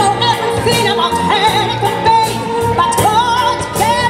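Live band music: a woman sings with a wide vibrato over drums, electric guitar and keyboard, with regular drum beats.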